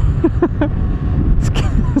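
Steady low wind and road rumble while riding a Honda Grom, its 125 cc single-cylinder engine on the stock exhaust whisper-quiet and barely heard beneath it.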